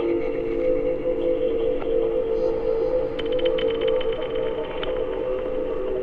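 Ambient sound-art music built on underwater hydrophone recordings of a river: sustained low drone tones over a crackly bed of noise, with a quick run of clicks around the middle.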